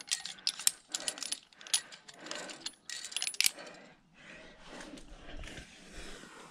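Quickdraw carabiners clinking against a steel bolt hanger and each other as a quickdraw is clipped to the bolt, in clusters of sharp metallic clicks during the first half.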